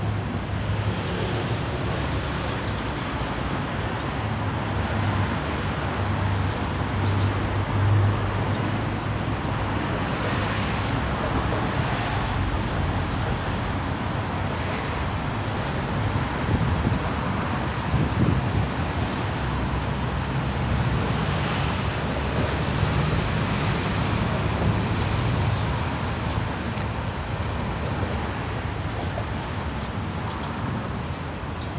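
Steady city road traffic noise, a continuous low rumble and hiss, with a few louder bumps about a third and two thirds of the way through.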